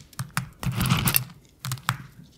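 A ferret eating coconut from a stainless steel bowl, heard close up: quick chewing clicks and smacks, a longer crunching burst about halfway through, and two sharp clicks near the end.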